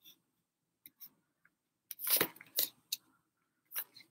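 Tarot cards being dealt onto a tabletop: a series of short soft slaps and scrapes of card on table, the loudest cluster about two seconds in and a few more near the end.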